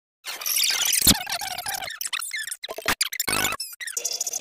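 A heavily distorted, chopped-up collage of cartoon sound effects, full of squeaks and pitch glides, with a loud thump about a second in and several abrupt cuts.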